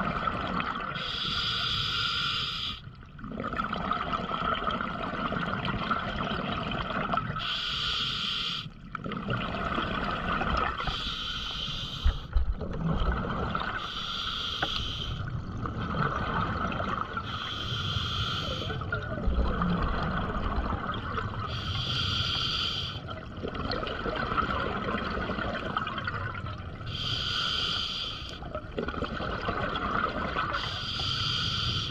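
Diver breathing through an open-circuit scuba regulator underwater: a short hissing inhale every three to five seconds, with the rumbling gurgle of exhaled bubbles between.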